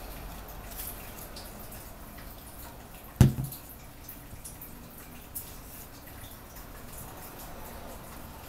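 A plastic Mod Podge bottle set down on a wooden tabletop with one sharp knock about three seconds in, amid faint small taps from glue work on paper.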